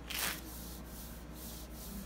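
A strip of hard wax ripped off the skin in one quick pull: a short rasping tear about a quarter second in, then faint rubbing.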